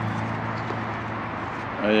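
A steady low hum holding one pitch, then a man's voice briefly near the end.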